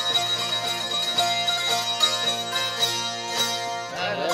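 Hungarian zithers (citera) playing an instrumental passage of a folk tune: a quick strummed melody over steady ringing drone strings.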